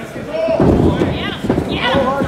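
Voices shouting over heavy thuds on a wrestling ring, one about half a second in and another about a second and a half in.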